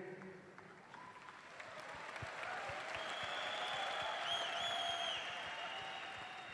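Large arena audience applauding, swelling over a few seconds and then easing off, with a high whistle-like tone that wavers in pitch joining about three seconds in.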